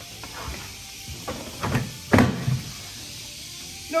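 Hollow knocks and bumps on a plastic trash can, then one sharp slap about two seconds in.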